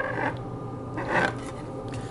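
Cardboard model-kit parts scraping and rubbing as a pipe piece is handled and pushed into its base, in two short, soft bouts: one at the start and one about a second in.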